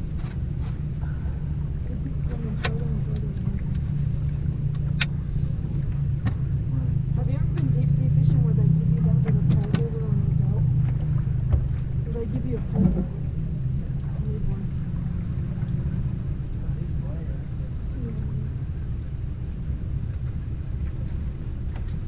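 A boat motor hums steadily, growing louder a few seconds in and easing off again after about twelve seconds. A few sharp clicks and a thump sound over it.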